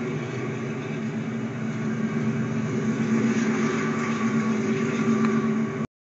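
Union Pacific coal train passing, with a steady low drone that grows louder in the second half and cuts off suddenly near the end.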